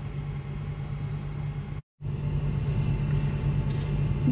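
A steady low mechanical hum, broken about two seconds in by a sudden gap of silence lasting a fraction of a second, after which the hum carries on unchanged.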